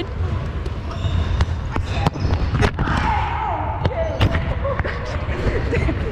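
Volleyball being played: a series of sharp slaps as hands and forearms strike the ball during a rally, the loudest a little under three seconds in, over a steady low rumble from the moving camera.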